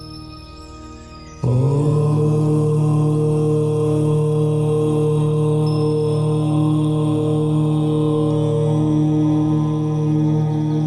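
A long, low, steady 'Om' chant held on one note begins abruptly about one and a half seconds in, over soft ambient meditation music.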